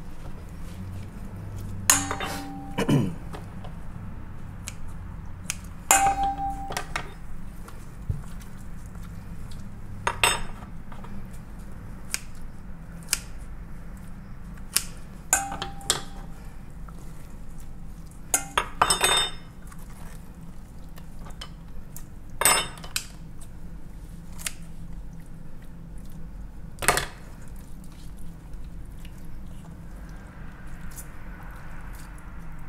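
Stainless steel mixing bowl clinking again and again as a carcass is worked in it, about seven knocks spread out, some ringing briefly, over a steady low hum.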